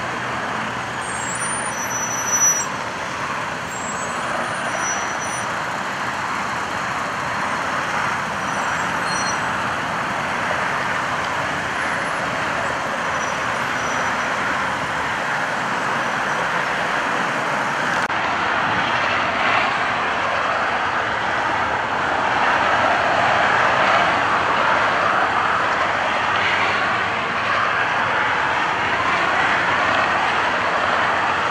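Steady freeway traffic noise from vehicles rolling past, a continuous hiss of tyres and engines that gets somewhat louder past the middle, with one brief louder bump early on.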